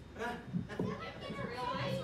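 Indistinct background chatter of several voices, children's among them.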